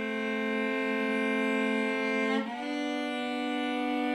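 Solo cello playing long, slow bowed notes: one note held, then a change to a slightly higher note about two and a half seconds in, held steadily.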